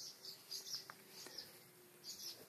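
Faint bird chirps in the background, short high calls repeated every half second or so.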